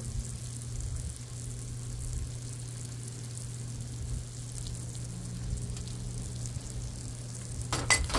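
Cubed potatoes frying on a Blackstone flat-top griddle: a faint, even sizzle over a steady low hum. Near the end, a couple of sharp clinks.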